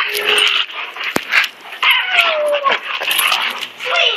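Two dogs, a German Shepherd and a German Shepherd–Rottweiler mix, play-fighting with rough mouthing noises, a sharp click about a second in, and a falling whine about two seconds in.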